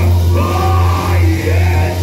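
Live gospel praise music: a band with a steady bass note, with a loud voice singing over it.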